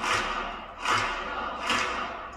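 Large audience applauding, the clapping swelling in regular waves a little under a second apart.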